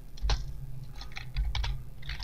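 Typing on a computer keyboard: one keystroke about a quarter second in, then a quick run of several keystrokes about a second in, over a low steady hum.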